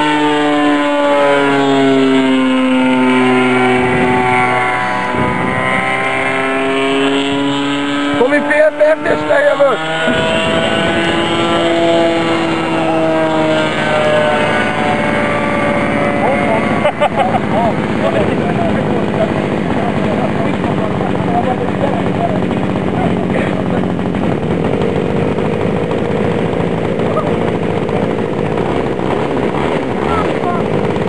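Engine and propeller of a radio-controlled aerobatic model plane buzzing as it flies overhead, its pitch rising and falling with throttle and passes. There is brief rough noise about nine seconds in. After that the engine note turns fainter and less distinct as the plane flies farther off.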